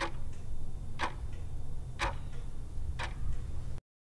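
Countdown-timer clock ticking, one tick a second, over a low steady hum; it cuts off suddenly near the end.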